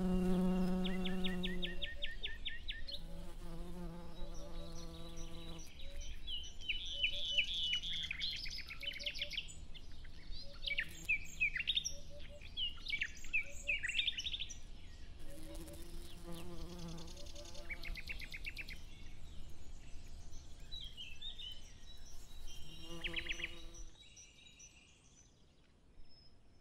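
A flying insect buzzing, coming and going in several passes, with small birds chirping and singing in between, most busily in the middle. It all fades down near the end.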